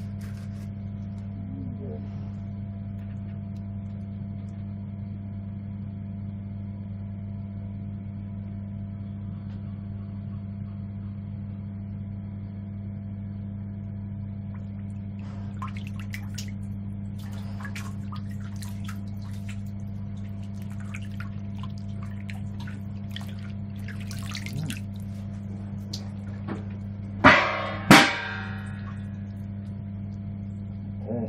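Hands splashing and swishing water in a hydrographic dip tank around a helmet submerged through the transfer film, over a steady low hum. Two loud, sharp knocks with a short ring come near the end.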